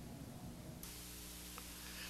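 Faint steady hiss with a low hum and no distinct sound event. The hiss turns suddenly brighter about a second in, as the audio switches to another feed.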